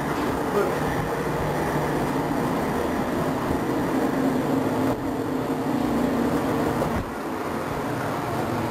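Steady din of shipboard machinery and ventilation inside a warship's passageway, with a low steady hum under it and faint voices in the background.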